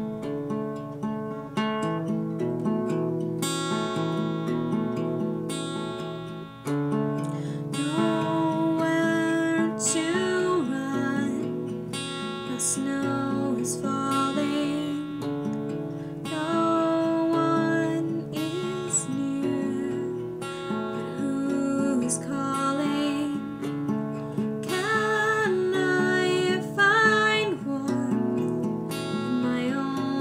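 Acoustic guitar played in a steady repeating chord pattern, with a woman's solo singing voice coming in about eight seconds in and continuing in phrases over the guitar.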